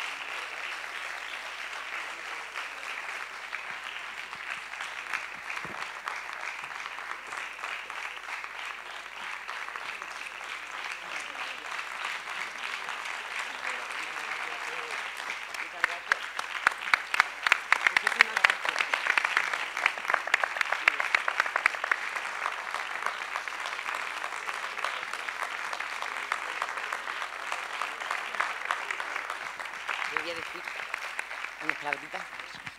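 Audience applause: many hands clapping steadily, growing louder for several seconds around the middle and then easing back to a steady level.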